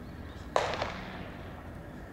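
A single sharp crack about half a second in, followed shortly by a lighter knock, with a short echo trailing off.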